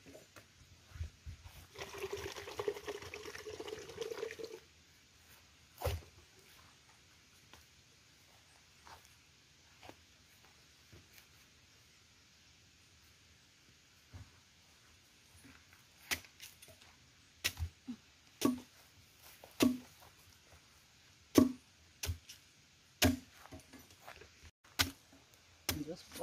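Coconut water pouring from an opened green coconut into a plastic jug for about three seconds. Later, a series of sharp machete chops into a green coconut's husk, about one every second or so, through the second half.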